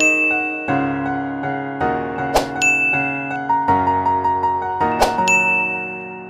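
Soft keyboard background music, with three pop-up sound effects about two and a half seconds apart: each is a sharp click followed by a high ringing ding. They mark the like, share and comment buttons appearing one by one.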